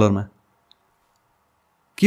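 A man's voice finishing a word, then a pause of near silence with one faint click.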